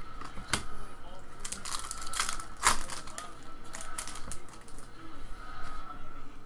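Foil trading-card pack wrapper crinkling as it is crumpled in the hand, with a cluster of sharper rustles in the middle.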